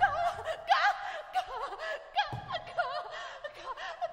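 Solo soprano's extended-technique vocalising: a run of short, breathy sung bursts that swoop up and down in pitch, like nervous laughter.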